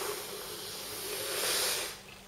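A person's long hissing breath through the teeth, swelling about one and a half seconds in and stopping just before the end.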